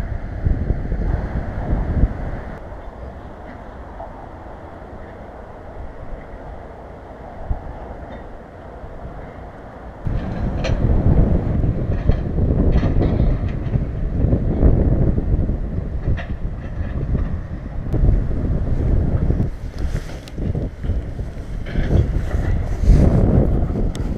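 Wind buffeting the microphone: an uneven, gusting low rumble that gets clearly louder about halfway through.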